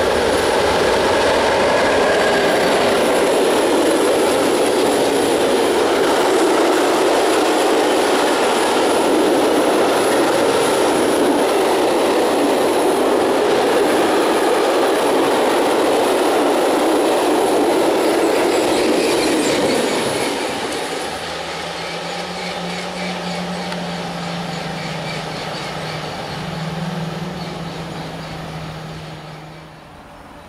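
Freight train of tank wagons, hauled by an ET22 electric locomotive, rolling past on the rails: a loud, steady rumble of wheels for about twenty seconds. It then falls quieter as the end of the train goes by, leaving a steady low hum.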